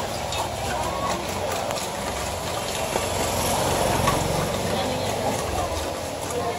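Busy market-street ambience: a steady wash of background noise with faint voices, and a low rumble that swells and fades in the middle.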